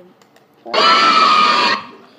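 A person's loud, harsh scream, a single burst about a second long starting under a second in.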